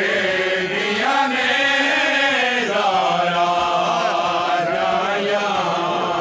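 A group of men chanting a noha, a Shia mourning lament, in long, drawn-out melodic lines with no instruments.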